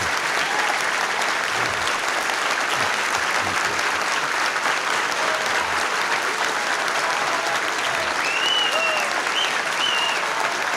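Sustained applause from a large indoor audience, steady in level, with a few high calls rising above the clapping near the end.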